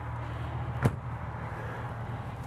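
One sharp click a little under a second in, the front-cap release latch of a motorhome letting go as its handle is pulled, over a steady low machine hum.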